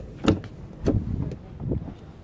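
A 2017 Volvo XC60's front door being opened: a sharp click from the handle and latch about a quarter-second in, then a second knock near the one-second mark as the door swings open, with some low handling rumble after it.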